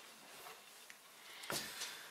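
Faint rustle of wool suiting cloth being handled on a table, with a soft tap about a second and a half in.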